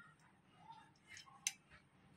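Faint handling of a chrome-plated metal tablet hardness tester: soft rustles and one sharp metallic click about one and a half seconds in.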